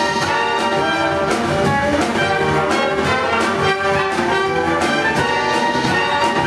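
A horn section of trumpet, trombone and saxophone playing a tune together, moving through a run of held notes.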